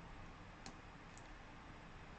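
Two faint clicks at a computer desk, about half a second apart, over near-silent room tone.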